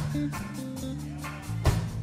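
Live roots reggae band playing an instrumental passage: a deep, held bass line under short, regular guitar chops, with a heavy drum hit near the end.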